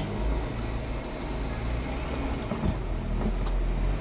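Jeep Wrangler engine running steadily at low revs, heard from inside the cab, while it pulls a Jeep stuck in mud on a tow strap.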